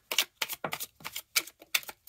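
Tarot cards being dealt off the deck onto the table: a fast, uneven run of sharp card clicks and snaps, several a second.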